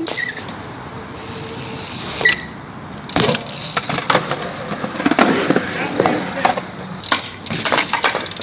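BMX bike rolling over concrete, with steady tyre noise and a denser run of knocks and clatters from about three seconds in as it rides through the bowl.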